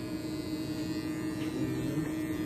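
Corded electric hair clippers running with a steady hum.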